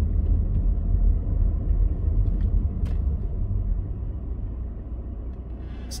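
Inside a moving car: a steady low drone of road and engine noise heard from the cabin, easing a little in the last couple of seconds.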